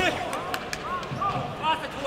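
Short shouts from coaches and spectators in an echoing hall, over dull thuds of a kickboxing exchange: gloves, kicks and feet on the ring canvas.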